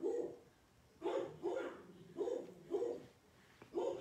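A dog barking, about six short barks spread irregularly with pauses between them.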